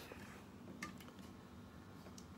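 Near silence: room tone, with one faint tick a little under a second in.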